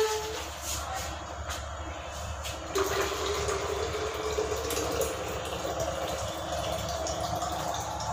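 Water running from a kitchen tap into the sink while dishes are rinsed, a steady rushing that gets louder about three seconds in. A steady low hum runs underneath.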